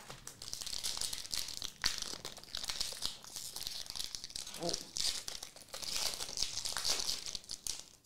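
Foil wrapper of a 2023-24 Marvel Annual trading card pack crinkling and tearing as it is pulled open by hand, a dense crackle with a few sharp ticks.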